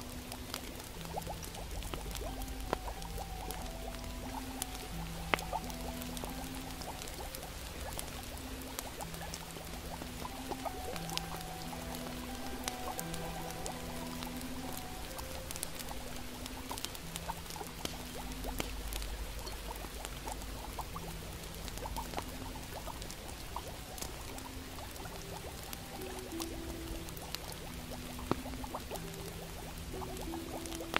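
Ambience mix of a crackling fire with frequent small pops and the bubbling of a cauldron, under soft slow music of long held low notes. A low rumble swells in for several seconds near the start and again past the middle.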